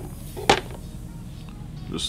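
A single sharp click about a quarter of the way in as the brass tip is handled on a wood-burning pen, over soft background music.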